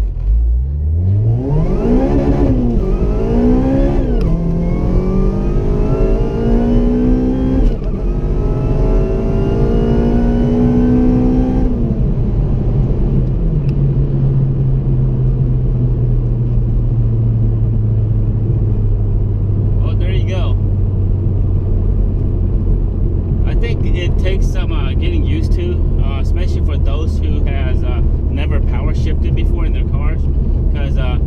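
Honda Civic Si's 2.0-litre four-cylinder engine, heard from inside the cabin, pulling at full throttle from first through fourth gear. The note climbs in pitch and drops sharply at three quick flat-foot shifts, where the Hondata ECU cuts the fuel injectors with the clutch in and the throttle held open. At about twelve seconds the throttle closes and the engine note falls away to a steady low cruising drone.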